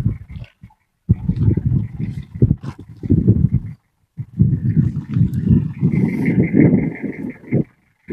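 Wind buffeting the microphone: a rough low rumble in two long gusts, with a short lull about four seconds in.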